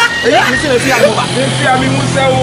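Men talking, with a steady low hum underneath from about half a second in.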